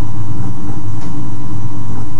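Loud, distorted instrumental backing music holding a sustained low chord between sung lines, overloading the microphone.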